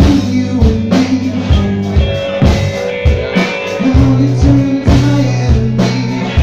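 Live rock band playing: electric guitars and bass guitar over a steady drum beat. The bass moves to a new, held note about four seconds in.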